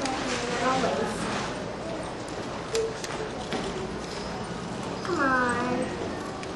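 Small scissors snipping through paper, a scatter of short, irregular clicks.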